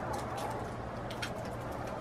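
A large black crow-family bird pecking at torn bread on a wooden porch rail: a few sharp, light taps of the beak, over a steady low hum.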